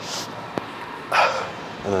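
A man's breathy, unvoiced exhale about a second in, breathing hard from exertion during floor ab exercises, with a short hiss of breath at the start and a faint click.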